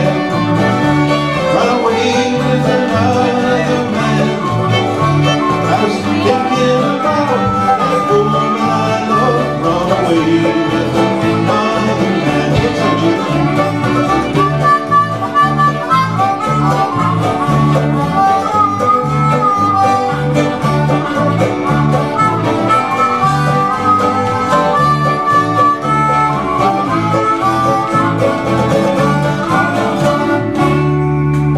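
Live acoustic old-time string band playing an instrumental tune: bowed fiddle and harmonica carrying the melody over strummed acoustic guitars and a lap-played slide guitar, with an upright bass keeping a steady pulsing beat.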